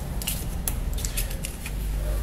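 Several small clicks and light scrapes from plastic opening tools and a tablet being picked up and handled on a silicone work mat.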